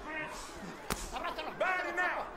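A single sharp smack of a boxing glove landing a punch, about a second in, among men's voices.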